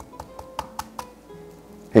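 A head of garlic broken apart by hand on a wooden cutting board: a quick run of about five small cracks and taps as the cloves snap off, over soft background music.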